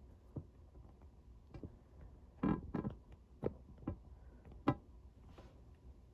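Handling noise: a scattered series of light clicks and knocks, the loudest few about two and a half seconds in, over a faint steady low hum.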